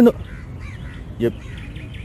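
Birds calling faintly in the background: soft chirps, and one short call about a second in.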